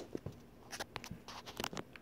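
Handling noise from a hand-held camera being moved around: a few light clicks and taps with scratchy rubbing between them.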